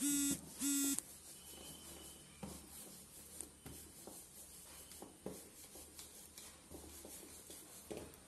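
Two short electronic beeps in quick succession, a buzzy steady tone, followed by faint knocks and rustles.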